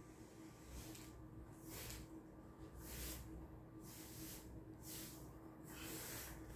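Faint swishes of a paintbrush on an extension pole stroking paint onto a wall along the ceiling line, cutting in the edge, about one stroke every second, over a low steady hum.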